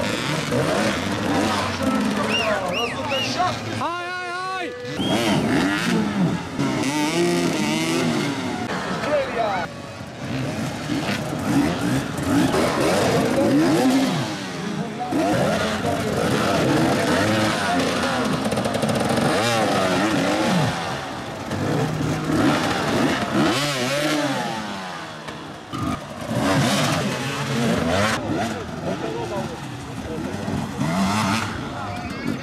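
Several enduro dirt bike engines revving up and down hard and unevenly as the bikes fight for grip in deep mud, with voices over them.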